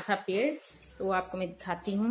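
A woman talking in Hindi, with a few light clinks of kitchenware being handled.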